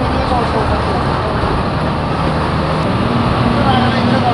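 A moving bus's engine and road noise heard from inside its cabin: a loud, steady rumble.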